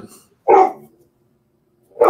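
A single short, loud dog bark about half a second in.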